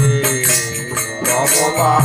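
A man singing a Bengali devotional kirtan, holding and bending long notes, over a steady beat of small metallic hand-cymbal strikes.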